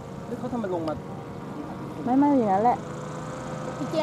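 Two short bursts of people talking, about half a second in and about two seconds in, over a faint, steady hum from the motor of a radio-controlled paramotor in flight.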